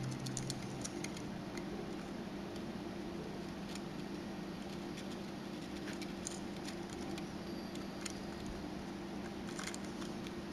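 Faint, scattered small clicks and ticks of a disassembled compact digital camera's small plastic and metal parts being handled, over a steady low hum.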